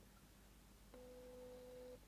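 Near silence, then about a second in a faint, steady, even-pitched tone that holds for about a second.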